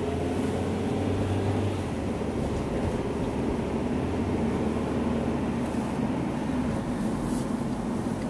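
Car engine and tyre noise heard from inside the cabin while driving: a steady low hum with no sudden events.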